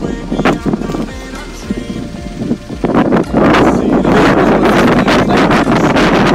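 Background music, with wind buffeting the microphone. The wind noise grows loud and dense about halfway through.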